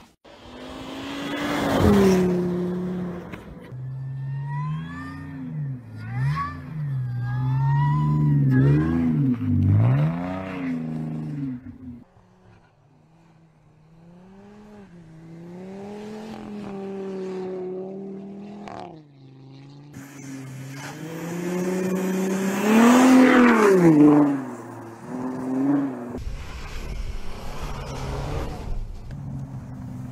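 Car engines revving up and down again and again as the cars slide and spin through snow, in a run of short clips that change about twelve seconds in and again near the end; the loudest rev comes shortly before the last change.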